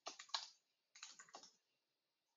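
Typing on a computer keyboard: two short runs of keystrokes, the second starting about a second in.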